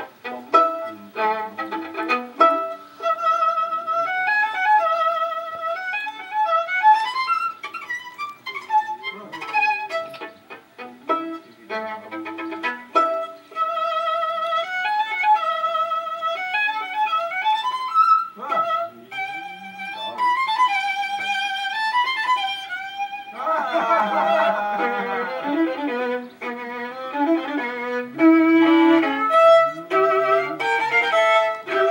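Fiddle music playing a quick melody, with trilled and wavering held notes and a denser, busier passage near the end.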